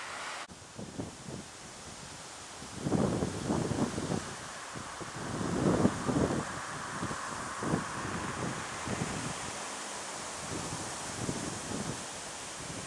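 Wind buffeting the camcorder's microphone in irregular low rumbling gusts, strongest about three and six seconds in, over a steady rushing hiss of wind.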